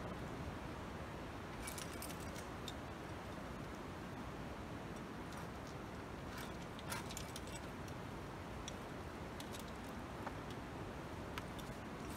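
Metal climbing hardware, carabiners and cams racked on a lead climber's harness, clinking in light, scattered jingles as he moves up a crack, over a steady background hiss.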